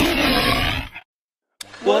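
A big-cat roar sound effect from a radio station's logo sting, dying away about a second in. After a brief silence, a voice begins near the end.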